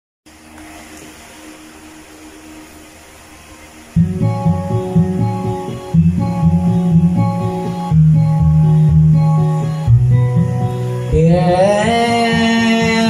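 Karaoke backing track of a pop song playing through a TV in a small room, recorded on a phone. It starts faint, then the full band comes in loud about four seconds in, with the bass note changing every couple of seconds. Near the end, singing voices enter.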